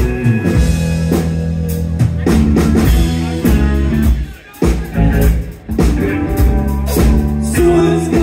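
Live rock band of electric guitars, electric bass and drum kit playing loudly. The band cuts out briefly twice, about four and about five and a half seconds in, then comes straight back in.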